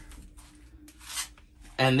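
A short, quiet pause in a man's talk, holding only a faint steady hum and a brief soft breathy noise about a second in. His voice comes back near the end.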